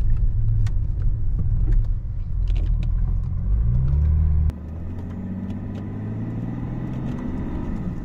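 Cabin sound of a stage-2 tuned BMW 535d's twin-turbo straight-six diesel: a heavy low rumble whose pitch climbs for about a second as it revs, then, after an abrupt cut about halfway, a quieter engine note rising slowly as the car accelerates.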